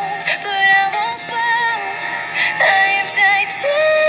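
A high female voice singing the chorus of a pop song over backing music, ending on a long held note.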